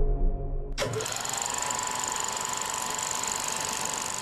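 The fading end of an intro music sting, then about a second in a film projector starts running: a steady, fast mechanical clatter with a high, held tone.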